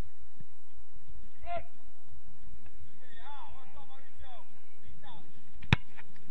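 Faint, distant voices calling across an open soccer field, over low gusts of wind on the microphone. Near the end there is a single sharp knock of a soccer ball being kicked.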